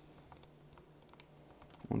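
A few faint, sparse light clicks or taps, about half a dozen spread through a quiet stretch, then a man's voice begins near the end.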